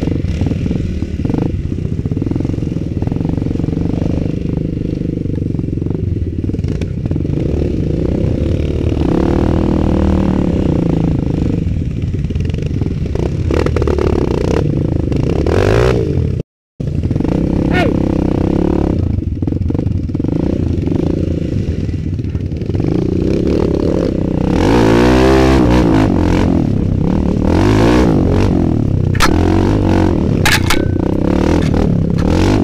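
Kawasaki KLX 150's single-cylinder four-stroke engine running under a rider on rough, muddy trail, heard close up: a steady engine note with the throttle opened and closed, revving up and down about a third of the way in and again near the end, over rattling and knocking of the bike on the rough ground. The sound cuts out for a moment about halfway.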